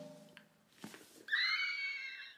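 A drum-roll sound effect dies away at the start. Then, about halfway through, a woman gives a high-pitched excited squeal that rises at first and is held for about a second.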